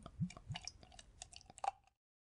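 Liquid glugging from a bottle into a pot: a quick run of rising bloops, about four a second, that dies out within the first half second. Light splashing clicks follow, with one stronger blip near the end, and the sound stops just before the end.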